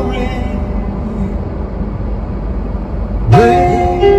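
Steady low rumble of a car cabin with the engine idling. A voice comes in near the end with a drawn-out note.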